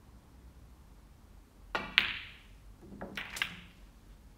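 Snooker shot: the cue tip strikes the cue ball, then the cue ball hits the red with a sharp click, the loudest sound. About a second later come several lighter knocks and a dull thud as the potted red drops into the pocket and the cue ball comes off the cushion.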